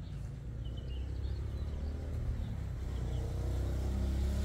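Low, steady engine hum of a nearby motor vehicle, growing gradually louder.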